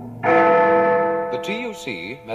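A single bell chime struck about a quarter of a second in and ringing on with a slow fade, the chime that opens a news bulletin.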